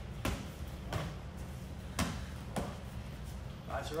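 Padded strikes from a jab and leg-kick drill: boxing gloves meeting gloves and kicks checked on shin guards. Four sharp thuds come in two quick pairs, each pair about two-thirds of a second apart, and the third thud is the loudest.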